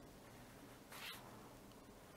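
Near silence: room tone, with one faint, brief scratch of a pencil on paper about a second in.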